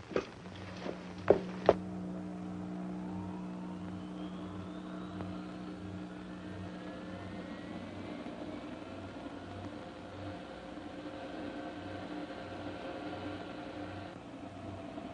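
A few knocks, then a car engine runs steadily, with part of its sound slowly rising in pitch over the first several seconds as it drives off.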